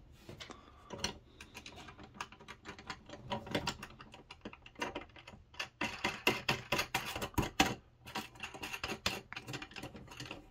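Light, rapid metal clicks and clinks of a nut being turned by hand onto a bolt on a steel antenna mounting bracket, with the small hardware being handled against the bracket; the clicking is busiest from about six to eight seconds in.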